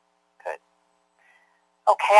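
A pause with a faint steady hum, broken by a single short vocal sound about half a second in; a voice starts speaking just before the end.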